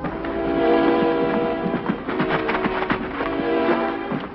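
Orchestral drama score playing sustained chords, with a quick run of sharp percussive strikes about halfway through.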